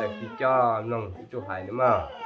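Speech: a person's voice talking.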